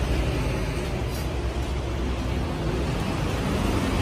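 Kitagawa bench drill press running with a steady low motor hum, the hum weakening near the end.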